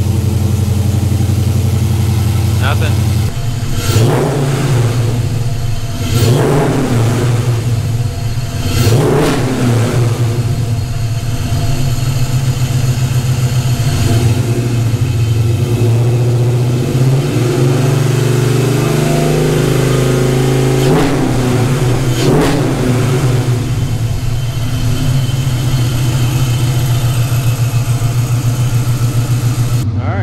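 Dodge Challenger R/T's 5.7-litre Gen III Hemi V8 idling just after being started on a newly fitted Holley Sniper fabricated sheet-metal intake manifold. Three quick throttle blips come in the first ten seconds and two more about two-thirds of the way through.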